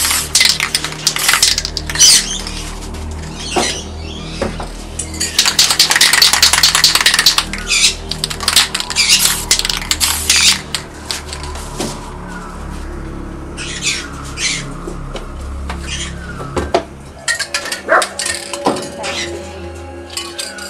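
Aerosol spray-paint cans hissing in short passes, the longest about two seconds, mixed with sharp clicks and knocks from handling the cans.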